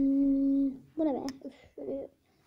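A voice humming one steady held note for about three quarters of a second, then a few short vocal sounds.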